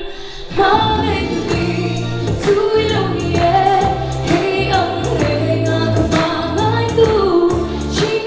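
A woman singing a song into a microphone over instrumental accompaniment, her voice picking up again about half a second in after a short break between phrases.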